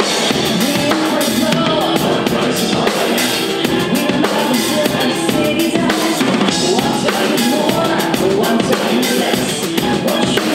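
Full drum kit (DW drums, Zildjian cymbals) played live in a busy, continuous pattern of bass drum, snare, rimshots and cymbals, with pitched music sounding underneath.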